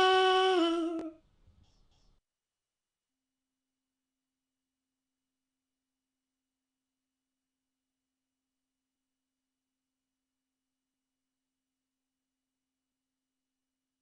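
A voice singing 'la' holds the last note of a birthday tune, fading out about a second in; the rest is silence.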